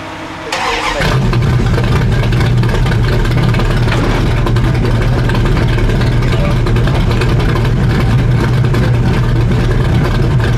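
The 1968 Plymouth Barracuda's V8-era engine catches about a second in after brief cranking, then runs on loud and steady, fresh back to life after sitting abandoned for about 20 years.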